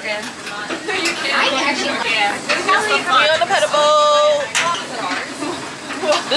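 Several women's voices chattering over one another, with one voice holding a drawn-out call about four seconds in.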